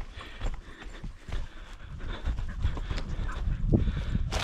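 Footsteps of a person walking through dry grass and sagebrush, about two steps a second, with the brush crunching and rustling underfoot.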